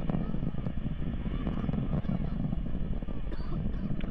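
The two AJ26 first-stage engines of an Antares rocket, heard from the ground as a steady, crackling low rumble while the rocket climbs.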